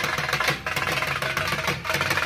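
Two dhol drums beaten with sticks in fast, continuous drumming. A motorcycle engine runs low underneath.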